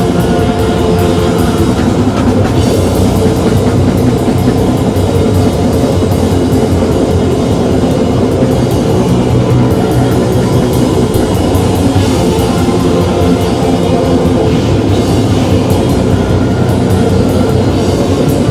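Live sludge/doom metal band playing loud and without a break: heavily distorted electric guitars and bass over a drum kit.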